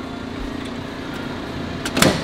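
Smart Fortwo's small turbocharged engine idling steadily, with a short click near the end.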